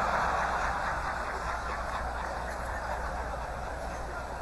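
Audience laughing and applauding in a large hall after a joke's punchline. The sound is at its fullest at the start and slowly dies away.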